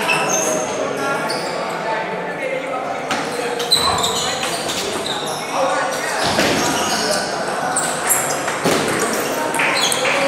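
Table tennis rally: a celluloid ball clicking off the bats and the table in an irregular series of sharp knocks, over the chatter of spectators in a large, echoing hall.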